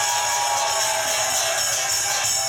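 Live band holding the final chord of a song, with a tambourine shaking steadily over it.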